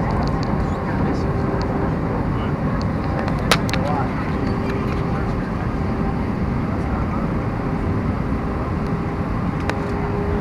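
Steady cabin roar of an Airbus A320 descending on approach, engine and airflow noise heard from a window seat over the wing, with a faint steady hum. One sharp click about three and a half seconds in.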